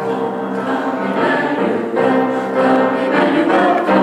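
Church choir of men and women singing in harmony, coming in together at once with long held notes.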